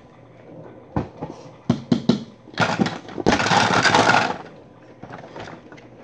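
A few light knocks, then a loud rustling scrape of about two seconds right against the microphone, followed by softer scuffs: a child moving about and brushing past the phone as he stands up on carpet.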